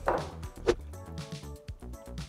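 Background music with a steady beat of sharp percussive knocks.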